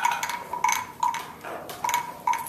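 Classroom percussion instrument struck repeatedly, about two or three strikes a second, each note ringing briefly at the same high pitch, with lighter taps in between.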